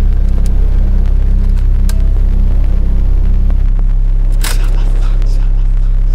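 Closing seconds of a phonk / Memphis rap track: a loud, heavily distorted, sustained bass drone with sparse percussion hits and a noisy burst about four and a half seconds in.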